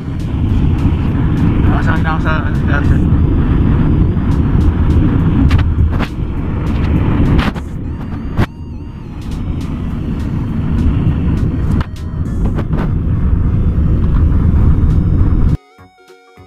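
Loud low rumble of a moving car heard from inside the cabin, road and engine noise pressing on the phone's microphone, with a short laugh about three seconds in. The rumble cuts off suddenly just before the end.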